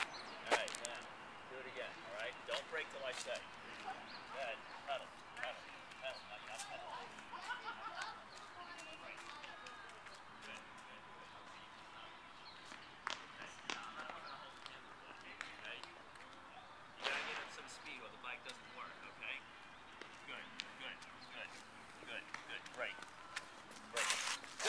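Faint, indistinct voices talking on and off over quiet outdoor background noise, with a few light clicks.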